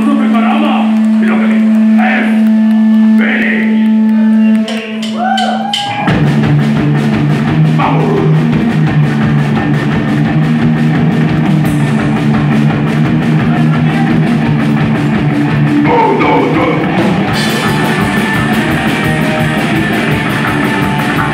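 A live trio of upright double bass, electric guitar and drum kit. A single steady note is held under a few spoken or shouted words, then the full band comes in about six seconds in, playing a loud, fast rock song.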